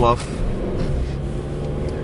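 Car engine and road noise heard from inside the cabin while driving: a steady low drone.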